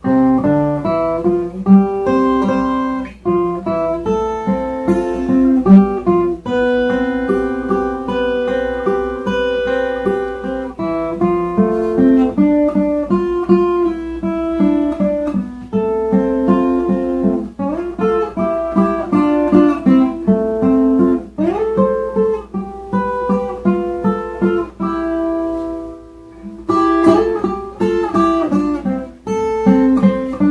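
Ten-string viola caipira with a metal resonator body, tuned to cebolão in E, played in a guarânia rhythm: strummed chords mixed with picked notes, with a couple of sliding notes about twenty seconds in.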